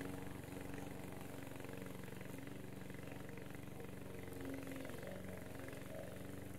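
Petrol engine of a Vigorun VTC550-90 remote-control mower running steadily while the machine crawls through long wet grass, heard faintly with an even drone.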